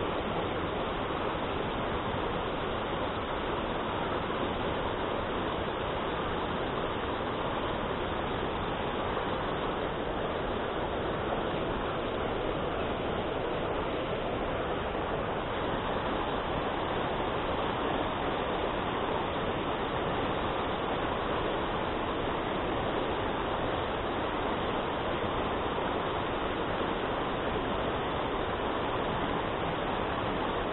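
Mountain stream rapids rushing over rocks: a steady, even rush of water with no change in level.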